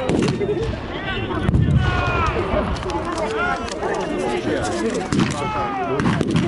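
Blank gunfire at a battle reenactment: several sharp shots, one near the start, a cluster about a second and a half in and more near the end, over continuous shouting voices.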